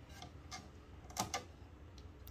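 A few light clicks and taps of a 3D-printed plastic stand being handled and set onto an espresso machine's stainless-steel drip tray, two of them close together a little after a second in.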